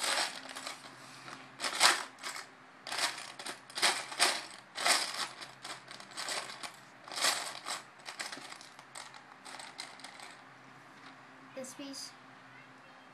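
Plastic Lego pieces rattling and clicking as a hand rummages through a clear plastic storage tub of loose bricks, in irregular clattering bursts that thin out near the end.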